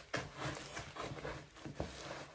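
Large diamond painting canvas rustling as it is handled and unrolled, a run of soft, irregular crinkles and light taps.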